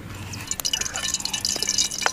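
Cooking oil heating in a wok over a wood fire: a dense, fine crackle and spitting of small pops that starts about half a second in.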